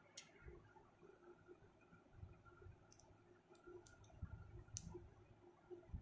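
Near silence: faint room tone with about five short, sharp clicks scattered through it and soft low rumbles.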